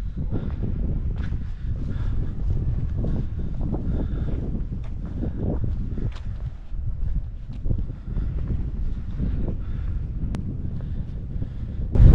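Wind buffeting the microphone: a gusty low rumble that rises and falls without a break.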